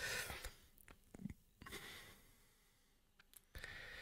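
A person breathing softly close to the microphone: three quiet breaths, with a few faint clicks between the first two, in a small quiet room.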